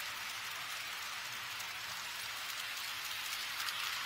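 HO scale model trains running on KATO Unitrack: a steady hiss of metal wheels rolling on the rails, growing louder near the end as a train comes closer.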